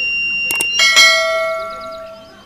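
The buzzer of a homemade BC557 photodiode fire alarm sounds a steady high-pitched tone, set off by a lit match's flame at the sensor, and cuts off a little under a second in. Right around the cut-off a short click and then a ringing bell chime follow: the sound effect of an animated subscribe button, fading away.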